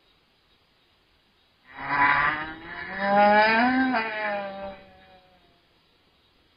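A loud, drawn-out moaning call, about three seconds long, that rises and then falls in pitch before fading.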